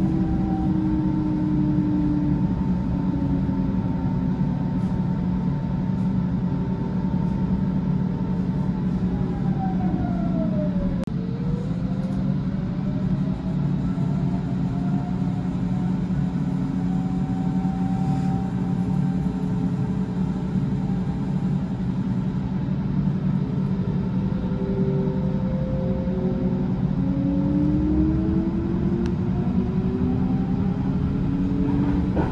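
Electric S-Bahn train running, heard from inside the carriage: a steady rumble of wheels and running gear under the whine of the electric traction motors. The whines glide in pitch as speed changes, one falling and another rising about a third of the way in, and more rising near the end.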